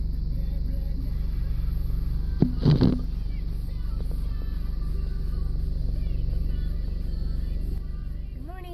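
Car engine idling, heard as a steady low drone inside the cabin, with quiet music playing under it. A brief clatter about two and a half seconds in.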